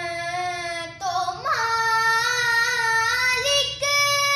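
A young girl singing a naat solo, without accompaniment, holding long notes that step up in pitch twice, with short breaks between the phrases.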